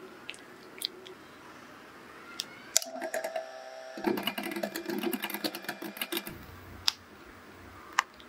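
A spatula stirring matcha paste in a ceramic bowl with a few light taps, then from about three seconds in an electric hand mixer running, its beaters ticking rapidly against a glass bowl as it beats matcha into a cream mixture. The mixer stops about two seconds before the end.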